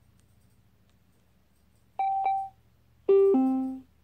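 Sylvania Bluetooth shower speaker's electronic prompt tones: two short high beeps about two seconds in, then a louder falling two-note chime near the end, its shut-down sound as it goes dead on an uncharged battery.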